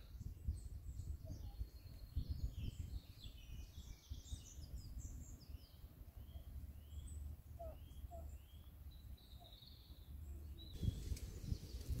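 Faint songbirds chirping, many short quick notes with a run of repeated sweeping calls in the middle, over a low uneven rumble.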